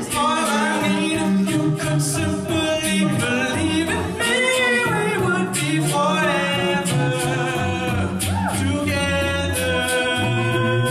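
All-male a cappella group singing sustained, wordless chords in close harmony, with vocal percussion keeping a steady beat of crisp clicks.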